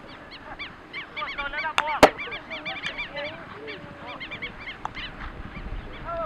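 Birds calling in a rapid series of short, arching cries, several overlapping, thickest between about one and three seconds in. A single sharp crack stands out about two seconds in.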